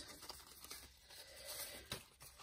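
Faint rustling of paper tags being handled and moved over a cardstock journal, with a slightly louder rustle near the end.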